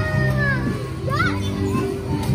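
Children's voices calling out over music with sustained low notes.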